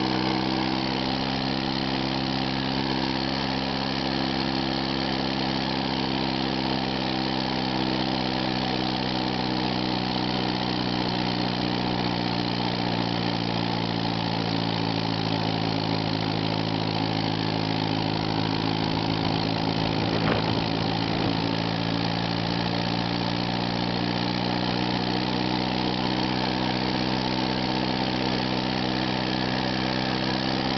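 Massey-Harris Pony tractor's small four-cylinder engine running steadily while the tractor is driven, its speed sagging a little about a third of the way in and then picking back up. A single faint click comes about two-thirds of the way through.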